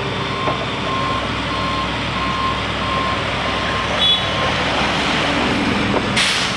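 Back-up alarm of heavy construction equipment beeping evenly, about one and a half beeps a second, stopping about four and a half seconds in, over the steady running of diesel machinery.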